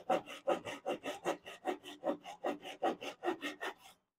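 Japanese hand saw cutting across a wooden 2x4 in quick, even strokes, about five a second, stopping shortly before the end.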